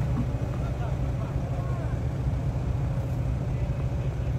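Armoured vehicle's engine running with a steady low rumble.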